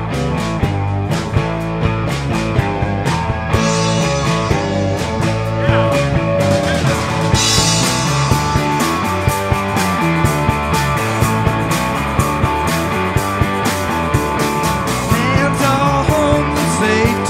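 Rock band playing an instrumental passage, with a steady drum beat under bass and guitar and a bright cymbal wash in the middle.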